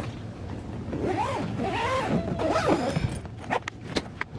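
Suitcase zipper being pulled shut: a rasping run whose pitch rises and falls as the pull speeds up and slows, followed by a few light clicks near the end.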